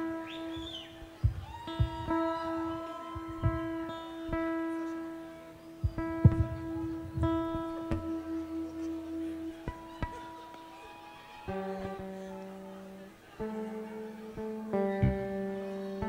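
Live band playing the slow opening of a Gypsy dance tune: long held chords with guitar and sharp rhythmic hits. The harmony shifts to new chords about eleven and a half seconds in.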